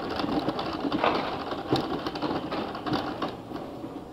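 Wheelchair rolling over stone paving: a steady mechanical whirring with a dense, irregular rattle, easing off a little near the end.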